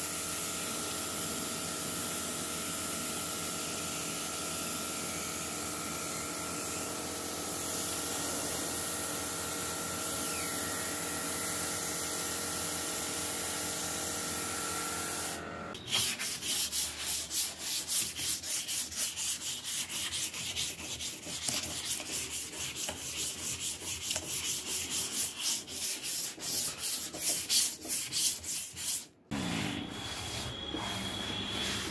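A steady hiss with a faint hum for the first half. It cuts off abruptly and gives way to hand-sanding of the freshly primed surface of a steamer trunk: quick back-and-forth rubbing strokes, uneven in loudness, until a brief break just before the end.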